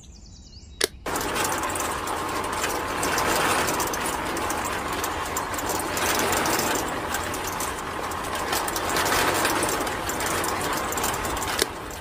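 Small electric motor of a toy-sized DIY concrete mixer switched on with a click about a second in, running steadily as the drum turns with water in it, then clicked off just before the end.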